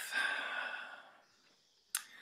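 A person's deep breath out, a long breathy sigh that fades away over about a second. A short sharp click near the end.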